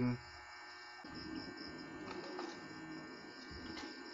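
Faint steady electrical hum over low background noise.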